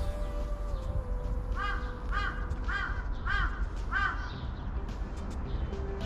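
A crow cawing five times in a quick, even series, about two caws a second.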